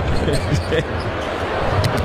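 A basketball dribbled on a hardwood court as it is brought up the floor, over the steady noise of an arena crowd.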